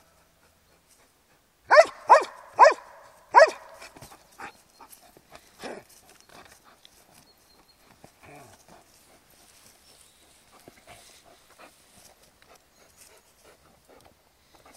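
Belgian Malinois barking four times in quick succession, loud and sharp, with one fainter bark a couple of seconds later, then only faint scuffling.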